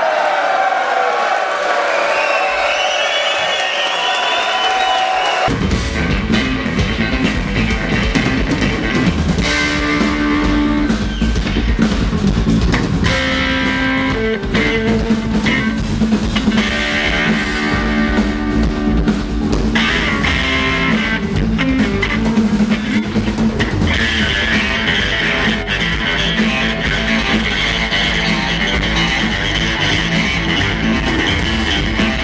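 A live rock band playing on stage: electric guitar and bass guitar with drums. It opens with sliding high notes alone, then about five seconds in the bass and drums come in and the full band plays on.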